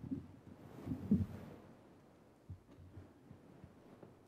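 Microphone handling noise: a few muffled low thumps with a brief rustle, the loudest about a second in, and a softer thump a little later.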